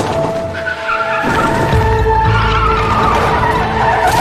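Minibus tyres squealing as it skids out of control, with a low vehicle rumble swelling about a second in, under dramatic music.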